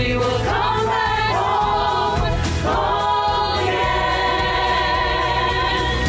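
A virtual choir of many voices, mostly women, singing a song together over a backing track. In the second half the voices hold one long chord.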